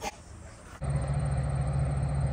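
A short high squeak right at the start, then a passing train: a steady low engine hum over a rolling rumble.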